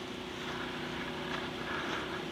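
A steady motor hum holding an even pitch over a constant hiss.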